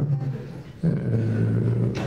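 A man's drawn-out hesitation sound, a long steady "euh" held on one low pitch for over a second, after a brief "hein" at the start.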